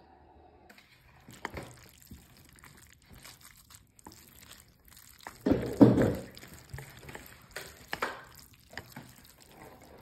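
Wooden chopsticks mixing jjajangmyeon noodles through thick black-bean sauce, giving wet, sticky squelches. The loudest cluster comes a little past halfway, with softer ones before and after.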